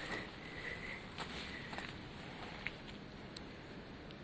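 Faint handling noise with a few small, sharp clicks, as the camera and a rubber boot are moved about in the hand.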